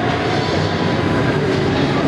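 Steady rumbling background noise of the ice rink, with no clear events standing out.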